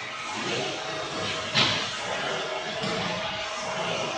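A single sharp bang about one and a half seconds in, with a short ring after it, over the steady background noise of a large hall.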